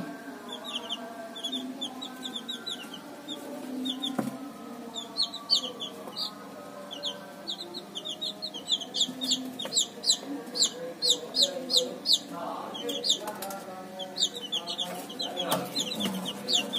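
A brood of week-old Thai gamefowl (ayam Bangkok) chicks peeping: many short, high chirps that fall in pitch, growing busier and more overlapping after about five seconds.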